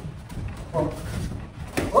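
Thuds of gloved punches and kicks landing on padded sparring gear, with a sharp, louder hit near the end. A voice calls out briefly about halfway.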